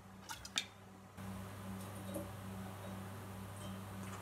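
A few faint clicks and squishes in the first second as clear plastic siphon tubing is handled while a beer siphon is being primed, then a steady low hum.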